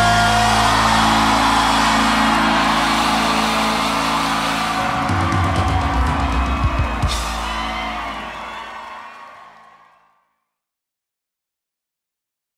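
A live rock-country band holds its final chord, with bass and electric guitars sustaining and drums building to a cymbal crash about seven seconds in, over a cheering crowd. The sound fades out about ten seconds in.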